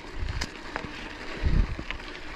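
Mountain bike on Fast Trak tyres rolling over a sandy, gravelly dirt track: tyre crunch with scattered small clicks and rattles, and wind rumbling on the microphone. A louder low rumble comes about one and a half seconds in.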